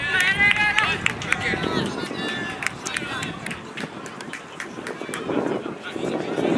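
Raised voices calling out across an outdoor football pitch, loudest in the first second or so, followed by a scatter of short sharp clicks.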